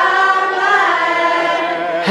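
A choir of voices singing a slow song together, holding long notes.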